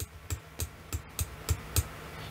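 Computer keys clicking in a steady run, about three to four clicks a second, as Street View is stepped along the road.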